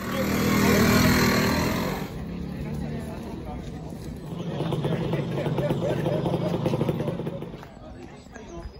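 Classic two-stroke scooter engines running, loudest in the first two seconds and again from about halfway to near the end, with people talking in the background.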